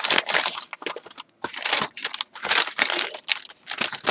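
Crinkling and rustling of a floral decorated bag, covered with napkin or tissue paper, as it is handled close up. The crinkling comes in irregular bursts with a short pause a little over a second in.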